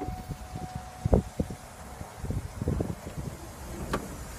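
A 2009 Chevrolet Tahoe's power liftgate closing: a steady tone through the first half, and a heavy thump about a second in as the gate shuts. A few lighter knocks follow, and there is a sharp click near the end.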